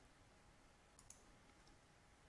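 Near silence with two faint computer mouse clicks close together about a second in.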